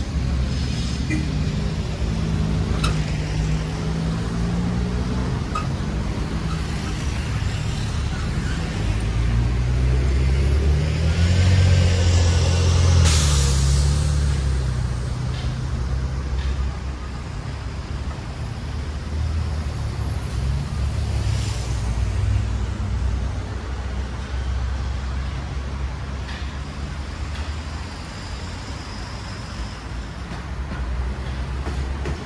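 City street traffic: a steady low rumble of passing vehicles. A heavy vehicle's engine builds to the loudest point about halfway through and ends in a short, sharp hiss, then the traffic fades back to a steady background.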